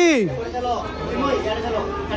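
Chatter of several people's voices among travellers on a station platform. It opens with the tail of a man's loud call, falling in pitch, in the first moment.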